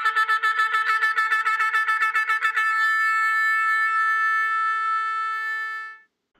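Intro music: a single brass horn, trumpet-like, sounds rapid repeated notes for the first couple of seconds, then one long held note that stops near the end.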